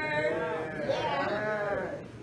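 A voice holding long, wavering pitched tones, drawn out for about a second at a time rather than broken into quick syllables.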